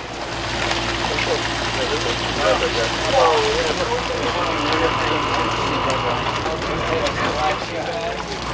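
A fishing trawler's engine and deck machinery running steadily, a low hum under a broad rushing noise, with a short voice exclamation about three seconds in. A steady high whine joins for a few seconds in the second half.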